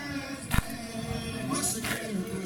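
Men chanting a noha, a Shia Muharram lament, into a microphone in long held notes, with a sharp chest-beating (matam) strike about every second and a quarter. The loudest strike comes just after half a second in, and another comes near the end.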